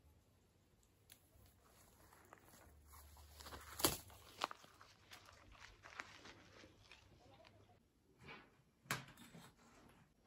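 Leafy branches rustling faintly, with scattered sharp snaps and clicks as small fruits are picked by hand from a bush; the loudest snap comes about four seconds in and another near the end.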